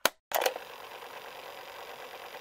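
A sharp click, then a second, longer burst about a third of a second in, followed by a steady hiss.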